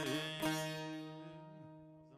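Bağlama (saz) playing the closing notes of a folk song: a last note or two plucked in the first half second, then the strings ring on and die away.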